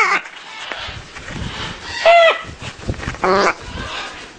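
Baby macaws calling: one arching squawk about two seconds in, then a shorter, rattling call about a second later.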